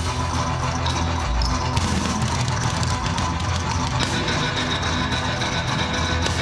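Live heavy metal played on amplified, distorted cellos with a drum kit, loud and steady.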